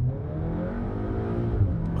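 Cupra Ateca's 300 hp engine heard from inside the cabin, its pitch climbing steadily as the car accelerates, then dropping near the end as the gearbox shifts up.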